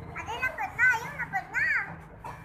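A young child talking in a high voice, in short rising and falling phrases.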